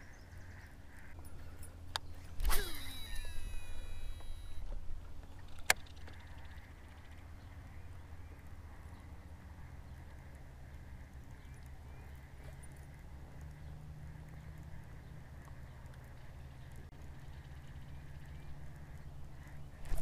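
Steady low rumble of wind on the microphone over open water, with a few sharp clicks about two and six seconds in, one of them followed by a brief ringing.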